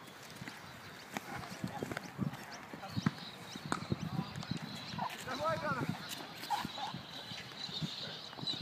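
Irregular knocks and thuds of a cricketer running an obstacle course on grass in batting pads, with faint distant voices calling about five seconds in.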